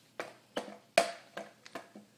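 A series of sharp knocks and clicks, about five in two seconds, from a skateboard and shoes being shifted about on a hard floor.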